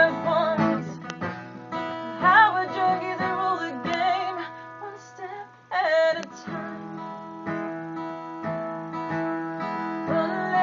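Acoustic guitar strummed in a live song, with a woman's voice singing short phrases over it several times.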